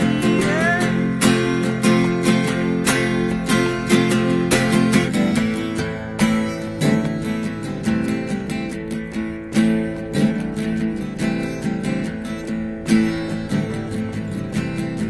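Two steel-string acoustic guitars strummed together, playing chords in a steady rhythm of hard, regular strokes.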